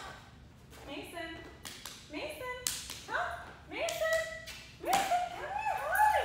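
A woman's voice calling short words to a dog, several rising calls growing louder in the second half, with two sharp taps about halfway through and near the end.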